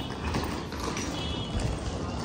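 Wheels of a hard-shell rolling suitcase clattering over a paved floor as it is pulled along.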